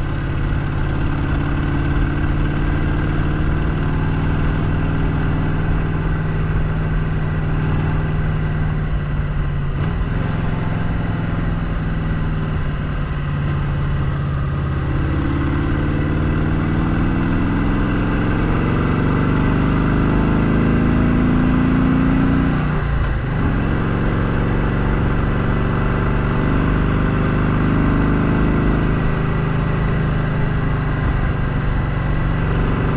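Harley-Davidson Sportster 883's air-cooled V-twin running under way, heard from the rider's seat. About halfway through the engine note climbs for several seconds, dips sharply, then settles back to a steady pace.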